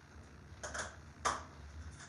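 Two short clicks, the second sharper and louder, as a hot glue gun is switched on.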